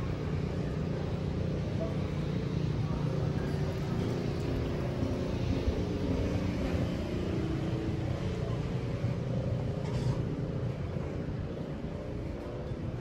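Steady low hum of city ambience, mostly distant road traffic.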